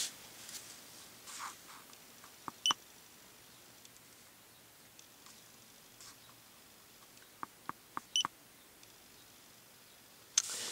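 Short electronic beeps from a handheld diagnostic scan tool as its keys are pressed to move through menus. One comes about two and a half seconds in, then a quick run of four about seven to eight seconds in, against a quiet background.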